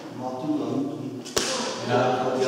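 A single sharp knock about one and a half seconds in, over a man's voice in a large hall.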